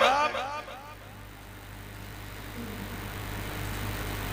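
A man's amplified voice trails off through a loudspeaker system whose echo effect repeats the last syllable several times, fading within about a second. After that comes a steady low hum and rumble from the sound system and surroundings, rising slightly toward the end.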